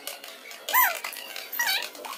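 Two short, high-pitched squeaky calls about a second apart, each rising and then falling in pitch.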